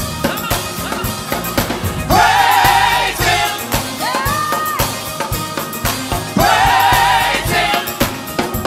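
Gospel praise team singing with keyboard accompaniment, the voices holding long notes with vibrato.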